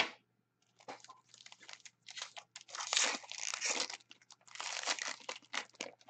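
Foil wrapper of a trading-card pack being torn open and crinkled: a sharp click at the start, then two long stretches of crackling, one from about a second in and one from about four and a half seconds in.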